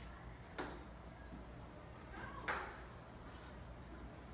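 Faint steady low room hum broken by two sharp, short clicks about two seconds apart, the second one the louder.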